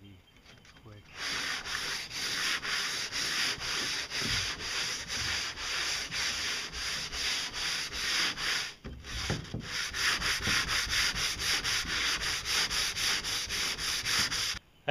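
Sandpaper rubbed by hand over a boat pontoon's hull in quick back-and-forth strokes, about three or four a second, starting about a second in with a short break partway through. This is the hull being sanded smooth after its barnacles were scraped off.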